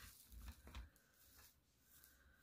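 Near silence, with a few faint soft rustles and knocks in the first second from hands handling dry reindeer moss.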